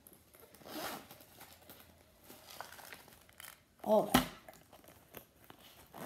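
Rustling and crinkling of a nylon Kipling cosmetic case being handled and opened. A sharp click, the loudest sound, comes about four seconds in.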